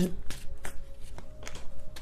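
Tarot cards being shuffled by hand: a run of short, irregular card clicks and slaps.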